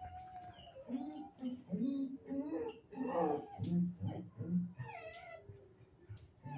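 Kennelled shelter dogs whining and yowling: a run of short calls that rise and fall in pitch, louder in the middle.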